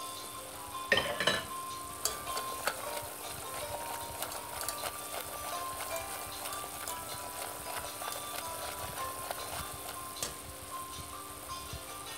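Flour-and-oil roux sizzling and bubbling in a metal pot as a wire whisk stirs it, with light clicks of the whisk against the pot. A brief, louder clatter comes about a second in.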